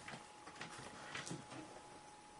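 Quiet room tone: a faint hiss with a thin, steady high hum and a few soft clicks.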